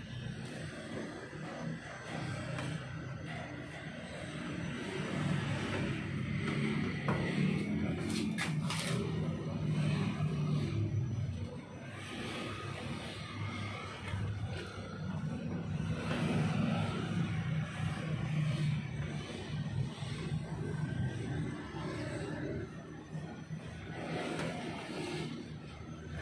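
Background music with a low, steady bass line. A couple of short clicks come about eight seconds in.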